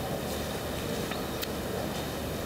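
Steady background room noise, a low even hiss, with two faint ticks about a second in.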